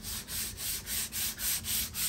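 Sandpaper rubbed back and forth by hand over a Yamaha bookshelf speaker cabinet, about three quick strokes a second, smoothing down the wood-putty patches.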